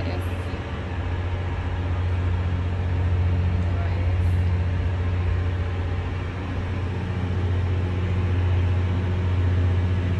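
Steady low rumble of a cruise ship under way, heard out on a cabin balcony, with a haze of open-air noise over it.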